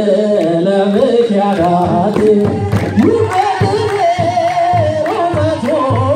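A group of women singing an Ethiopian Orthodox mezmur (hymn) together, with rhythmic hand clapping about twice a second.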